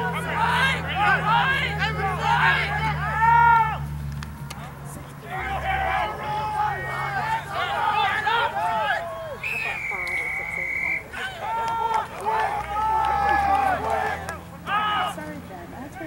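Rugby players shouting on the pitch, with many drawn-out, overlapping calls heard at a distance. A referee's whistle sounds once, a single steady blast of about a second and a half, a little over halfway through.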